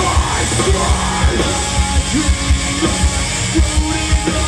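Hardcore band playing live at full volume: pounding drums with a driving kick-drum beat under heavy band instruments, and a vocalist yelling.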